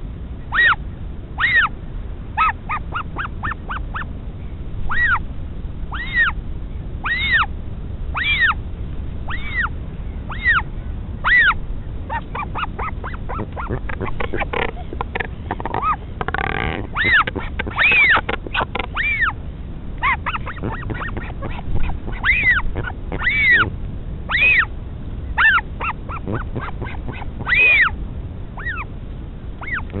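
Northern royal albatross chick begging for food: short rising-and-falling cries repeated about once a second as a parent comes to feed it. Around the middle, a parent gives a louder, harsher call with its bill raised skyward. A steady low wind rumble runs underneath.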